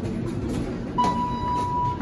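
Elevator signal tone: one steady, high electronic beep lasting about a second, starting about a second in, over a low background rumble.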